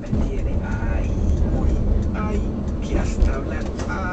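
A car radio broadcast, a voice from an advert or show, plays inside a moving car's cabin over the steady low rumble of engine and road.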